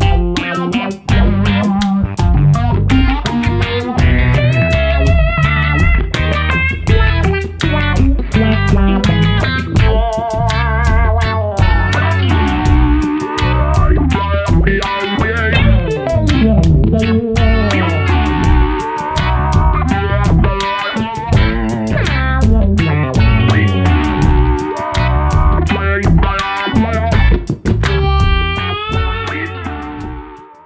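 Electric guitar played through an Electro-Harmonix Cock Fight Plus wah/fuzz pedal, switching between its crying-tone wah and talking filter, so the lead line sweeps and wavers in tone. It plays over a backing of drums and bass guitar and fades out at the end.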